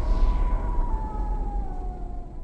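Dark sound-design sting for a title card: a deep rumble under a thin high tone that slowly glides downward as the whole sound fades.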